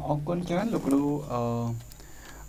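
A man's voice speaking, then a long held syllable with a steady pitch, about two-thirds of the way through.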